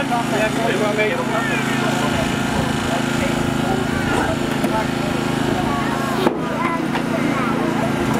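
A small engine running steadily while a hydraulic rescue cutter works through the car door's hinges, with one sharp crack about six seconds in as a hinge is cut through.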